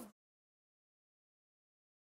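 Dead silence: the sound track cuts out completely just after the start, leaving no sound at all.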